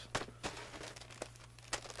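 Small mail packaging handled by hand: a few light crinkles and clicks, spaced out, over a faint steady hum.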